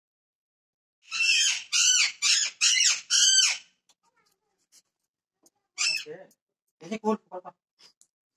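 Pet parrot squawking: a quick run of five or six high-pitched calls, then one more call a couple of seconds later.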